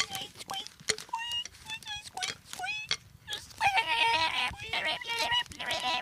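Cartoon mouse squeaking: a string of short, high-pitched squeaks that bend up and down. About three and a half seconds in they turn into a rapid, overlapping chatter.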